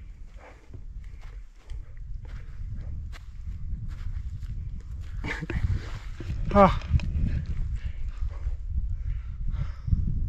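Wind buffeting the microphone with a steady low rumble, over footsteps on dry grass and scattered handling clicks. A short vocal sound about six and a half seconds in.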